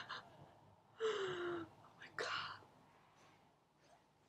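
A person's breathy gasps and exclamations of shock: a short gasp at the start, a longer one with a falling pitch about a second in, then another short burst.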